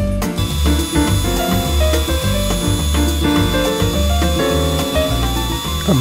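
Background music with piano notes over a woodworking jointer running: a steady high-pitched whine that starts about half a second in.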